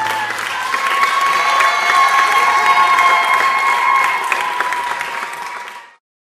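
Audience applause, many people clapping, with a steady high tone held through it; the sound cuts off abruptly near the end.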